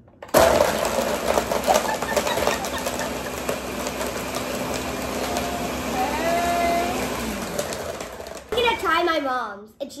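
Ninja countertop blender running, blending a milkshake of ice cream with added ice. It starts abruptly with some early clatter, runs steadily for about seven seconds, then its motor winds down, the hum falling in pitch.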